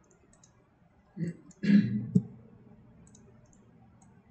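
Faint computer mouse clicks while the view is dragged, with a brief louder thump and rustle about a second and a half in, ending in a sharp knock.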